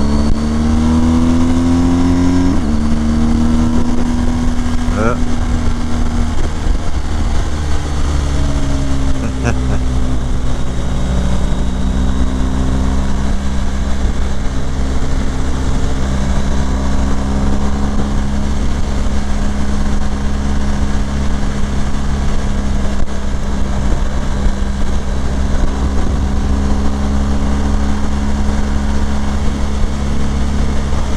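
BMW R 1250 GS HP's 1254 cc boxer twin engine pulling up through the revs, an upshift about two and a half seconds in, then running at steady cruising revs. Wind rushes over the microphone throughout.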